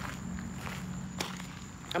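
Footsteps of people walking at an easy pace, a few soft irregular steps with one sharper tick about a second in, over a steady low hum.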